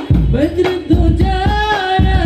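A young man sings an Islamic devotional song into a microphone, backed by a hadrah ensemble of rebana frame drums beating a steady rhythm. Near the end he holds a long, wavering note.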